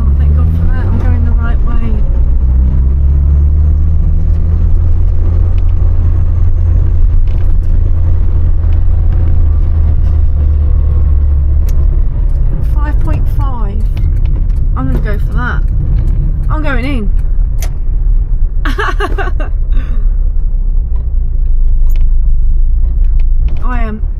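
Austin Allegro 1500's four-cylinder engine heard from inside the cabin, driving at low speed. It rises in pitch as it pulls away in the first couple of seconds, then runs with a deep steady drone that eases to a lighter running sound about halfway through.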